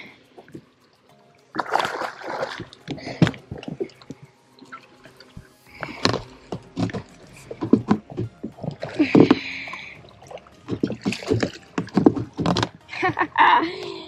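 A small hooked bass splashing as it is brought to the side of a boat and netted, with knocks and handling noises. Brief wordless vocal sounds come in among them.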